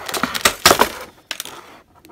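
Clear plastic packaging tray crackling and clicking as a small figure is cut and worked free with a pair of cutters. A cluster of sharp clicks comes in the first second, then it quietens near the end.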